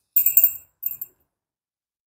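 A short, bright clinking jingle of small hard objects, then a fainter clink just after; the rest is silent.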